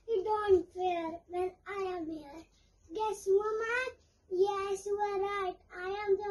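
A young child singing a short tune in separate phrases, with notes held at a steady pitch.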